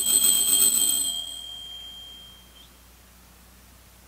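Altar bell rung at the elevation of the consecrated host: a bright, high ringing that starts suddenly, stays uneven for about a second and then fades out over the next second and a half.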